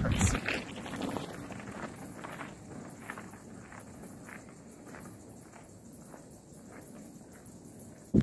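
Faint crunching of mountain-bike tyres on a gravel road, fading as the bike rides away, over quiet outdoor background.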